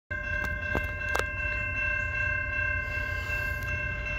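Air horn of an approaching Canadian National freight train's lead locomotive, a GE ET44AC, held as one long steady chord of several notes over a low rumble.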